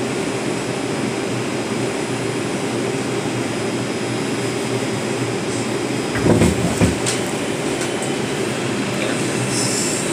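R142 subway car interior with the steady hum of the train standing in the tunnel. About six seconds in, two heavy low clunks as the train jolts: the delay is over and the train is starting to move again. A short hiss comes near the end.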